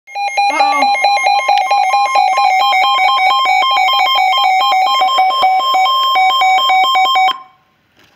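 Weather radio's alert alarm sounding for a received tornado warning: a loud, rapid warble alternating between two tones, which cuts off suddenly about a second before the end.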